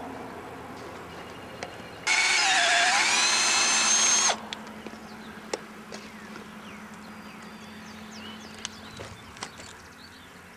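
Power drill running for about two seconds while boring into wood: its pitch sags under load and recovers before it cuts off abruptly. It is drilling the eye sockets of a chainsaw-carved eagle.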